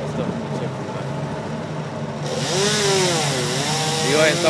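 A steady low engine hum, then a chainsaw that starts running loudly a little over two seconds in, its pitch swinging up and down as the throttle varies.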